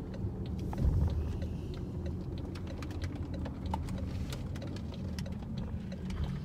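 Steady low rumble of a car heard from inside the cabin, with faint scattered ticks.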